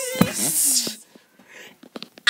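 A child's voice making storm sound effects with the mouth: a gliding wail and a hissing whoosh, with a sharp click about a quarter-second in. It dies away after about a second.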